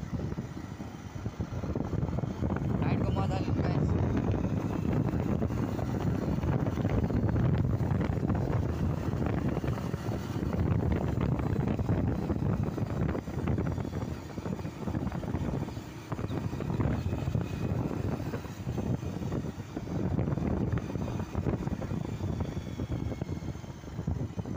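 Wind buffeting the microphone on a moving motorcycle: a heavy low rumble that swells and dips, with the bike's running noise underneath.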